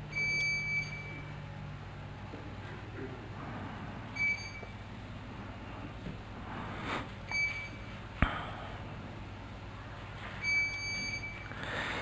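Short electronic beeps from the council chamber's voting system during a vote, four of them a few seconds apart, the first one longer. A single sharp click comes about eight seconds in, over quiet room tone.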